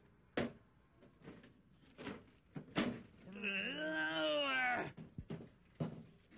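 Trash being dumped into a metal garbage can, with a few sharp knocks and thuds, then a drawn-out wordless voice that rises and falls in pitch for about a second and a half.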